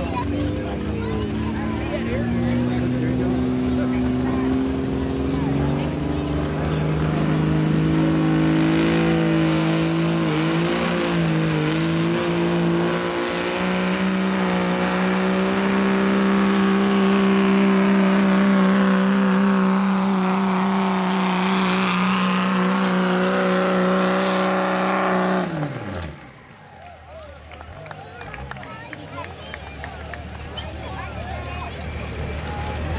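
Turbo-diesel pickup truck pulling a weight sled at full throttle: the engine holds a steady pitch while a high turbo whine rises and builds over several seconds. About 25 seconds in the driver lets off, and the engine sound falls away quickly.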